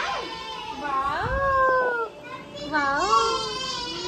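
A young child's voice making two long, high-pitched drawn-out calls without clear words, each rising and then falling in pitch.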